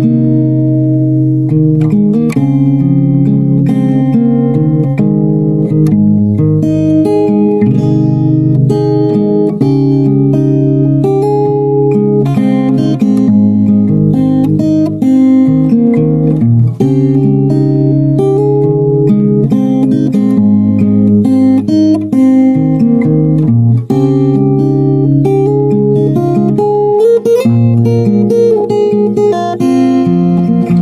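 Solo acoustic guitar played fingerstyle: a picked melody over bass notes, continuous and loud, heard from inside the guitar's body.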